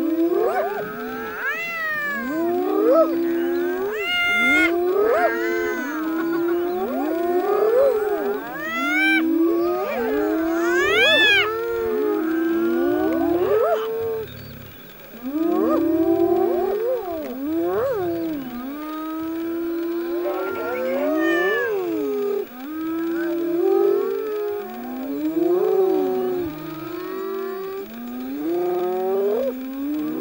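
A chorus of spotted hyenas calling over one another without a break: wavering, sliding calls, with sharp rising whoops now and then and a short lull about halfway through. This is the excited calling of a hyena clan contesting a lions' buffalo kill.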